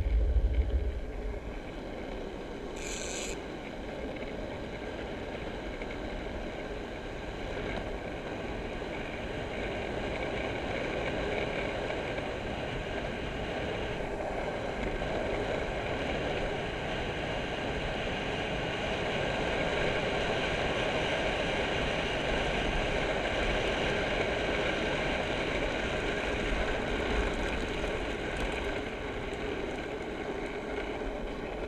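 Small hard wheels rolling fast on rough tarmac on a downhill run: a steady rolling rush that grows slightly louder as speed builds. Wind buffets the microphone in the first second, and a short high-pitched burst comes about three seconds in.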